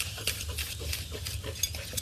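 Chef's knife chopping fresh herbs on a wooden cutting board: quiet, irregular taps.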